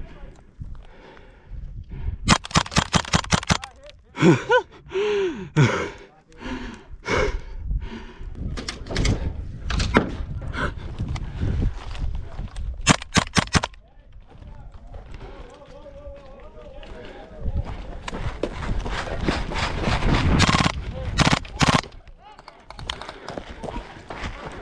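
Airsoft rifle firing in full-auto, several short bursts of rapid shots spaced through the stretch, with pauses between.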